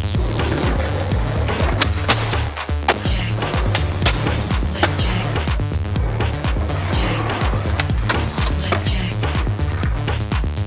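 Skateboard wheels rolling on pavement with several sharp clacks of the board, mixed with electronic music with a steady beat.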